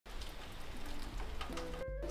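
Steady rain, an even hiss with scattered drop ticks. A few faint musical tones come in near the end, and then the sound cuts off abruptly.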